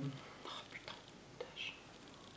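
A woman's faint whispered, breathy half-words and mouth sounds, with a few small clicks, between her spoken sentences.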